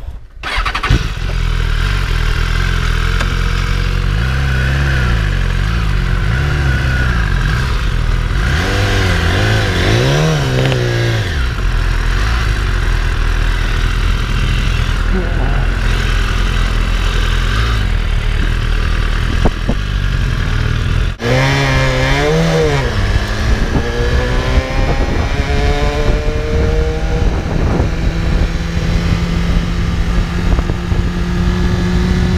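BMW S1000RR superbike's inline-four engine starting about a second in and running, with rises and falls in revs around ten seconds in. About twenty seconds in the revs dip briefly, then the engine accelerates with a series of rising pitch sweeps.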